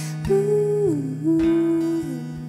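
A woman singing a long held note over a plucked nylon-string classical guitar; the note slides down about a second in and settles on a lower pitch.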